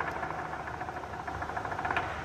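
Lion dance percussion playing a quiet, fast even roll over a steady ringing tone, the suspense accompaniment while the lion holds its pose on the poles.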